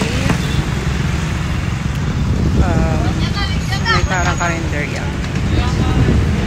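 Road traffic with a truck passing close by at the start, over a steady low rumble. A person's voice comes in briefly in the middle.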